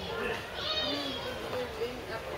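Indistinct chatter of a crowd of people, children's voices among them, with a child's high-pitched call just under a second in.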